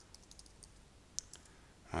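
Faint keystrokes on a computer keyboard as a word is typed: a few light, scattered clicks, one sharper than the rest a little past halfway.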